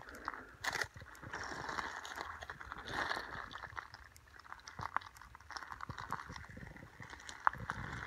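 Footsteps crunching over the stones of a creek bed, with irregular clicks of rock knocking underfoot.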